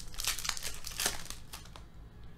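Foil trading-card pack wrapper crinkling as it is torn open and the cards are slid out: a quick string of short, crackly rustles that dies down near the end.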